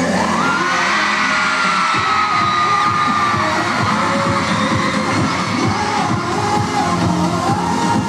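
Live K-pop song played loud through a concert hall's sound system, with a large crowd cheering over it. About two seconds in, the deep bass drops out while the music and cheering carry on.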